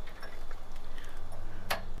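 A few light metal clicks, the clearest near the end, as a retaining pin is fitted into the L bracket holding a weight-distribution hitch spring bar.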